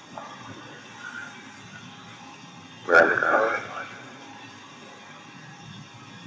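Poor-quality interview recording of a room: a steady low hiss throughout. About three seconds in, a sharp click is followed by a brief burst of a voice lasting about a second.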